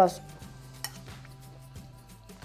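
A metal fork clinks once against a ceramic plate, a single sharp tap about a second in.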